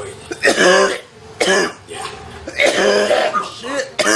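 A man coughing in about four rough, voiced bouts after inhaling smoke.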